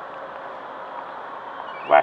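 Steady background hiss with no distinct events, then a man's voice starting just before the end.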